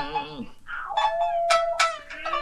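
A male rōkyoku chanter drawing out a long, held sung note in the middle of a phrase. A shamisen is plucked sharply twice near the end.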